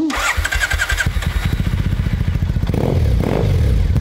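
Triumph fuel-injected parallel-twin motorcycle engine cranking briefly on the electric starter and catching within about a second, then idling with an even beat. It starts on the first push of the button after sitting unused for months.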